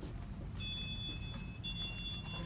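An electronic two-note tone, like a door chime or alarm: one steady note for about a second, then a different note held past the end, over a low background hum.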